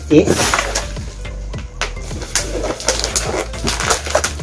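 Background music with a steady low beat, over irregular rustling and crinkling of cardboard and plastic packaging as items are handled inside an open parcel box.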